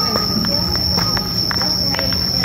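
Insects droning steadily at one unbroken high pitch, with a few light crackles of footsteps on dry leaf litter.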